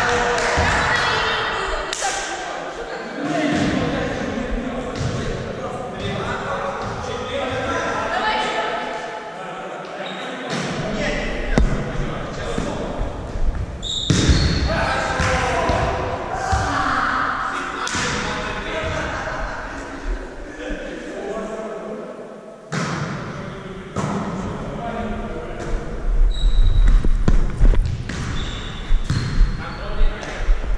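Volleyball being played in a large, echoing gym hall: repeated sharp slaps of hands striking the ball and the ball hitting the floor, scattered through a rally.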